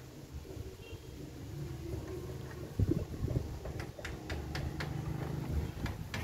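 A low engine hum, growing a little louder in the second half, with a few light knocks.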